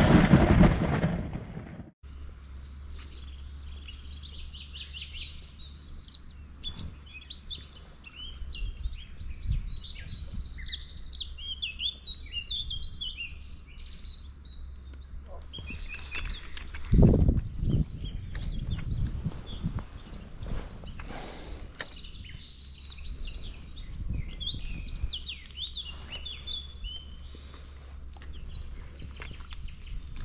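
Small birds singing and calling over a steady low rumble, with a louder rumble about seventeen seconds in. A loud rushing sound cuts off abruptly about two seconds in.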